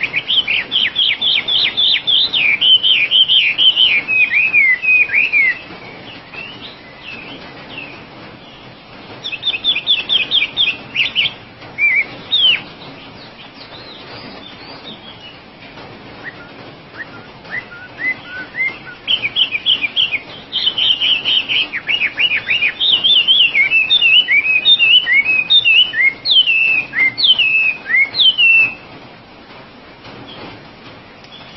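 Chinese hwamei singing loudly in bursts: fast runs of repeated whistled notes that give way to varied slurred notes. There is a long phrase at the start, a shorter one about a third of the way in, and the longest from about two-thirds through to near the end, with quieter gaps between.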